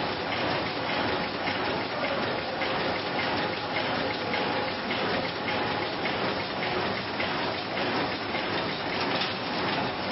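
Sheet-fed offset printing press running, a steady dense clatter of its feeder and cylinders with a faint hum underneath.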